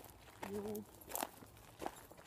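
Footsteps on a dry dirt path: three steps about two-thirds of a second apart, with a short voiced sound from one of the walkers about half a second in.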